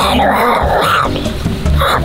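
A woman answering in a raspy, growled zombie voice, twice, over background music with a steady low beat.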